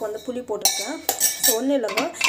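Stainless steel ladle scraping and clinking against a steel pot, in two short bursts of sharp metallic scraping about two-thirds of a second and a second in, with a voice talking over it.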